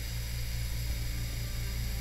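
Steady low electrical hum with a background hiss, unchanging throughout.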